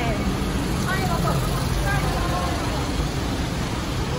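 Steady low rumble of a queue of cars idling in a parking garage, with voices talking briefly over it.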